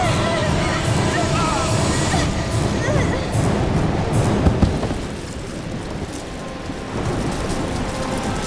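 Horror-show soundtrack: a dense low rumble with high, wavering cries over it for the first three seconds, two sharp hits about four and a half seconds in, then a quieter stretch.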